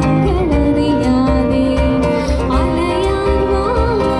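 Live acoustic music played over PA speakers: a woman singing a melody, accompanied by a strummed acoustic guitar and a cajón keeping a steady low beat.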